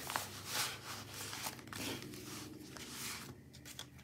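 Soft rustling and scuffing from a planner folio's clear plastic pockets and sticker sheets being opened and handled, a series of brief rustles one after another.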